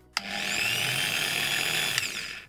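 Corded electric drill running on the output of a homemade 12 V to 220 V MOSFET inverter: it starts suddenly a moment in, its whine rises as the motor spins up, then it runs steadily.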